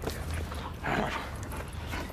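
A German shepherd makes a brief excited vocal sound about a second in, during tug-of-war play.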